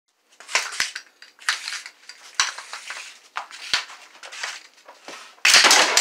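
Broom bristles sweeping a rubber floor mat in short, noisy strokes about once a second, with a few light knocks. Near the end a much louder sudden burst of noise cuts in.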